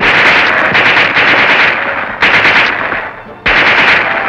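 Submachine gun firing automatic bursts: a long burst, then two shorter ones.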